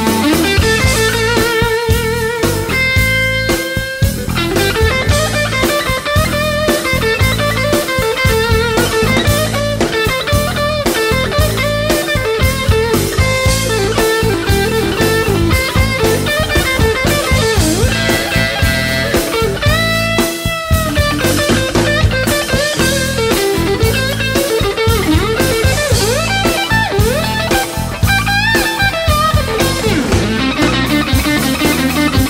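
Blues-rock band playing an instrumental stretch led by electric guitar over drums. The guitar plays held, wavering notes and bent notes that glide up in pitch, twice in the latter half.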